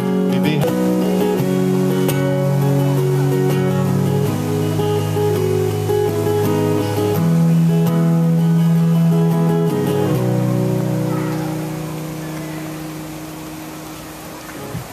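Acoustic guitar strumming chords to close a song, without singing. The last chord rings and fades away over the final few seconds, ending the song.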